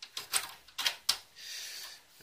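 Sheet-metal expansion-slot bracket of a PC case being slotted back into the chassis: four or five sharp metal clicks and knocks, then a short scrape in the last half second.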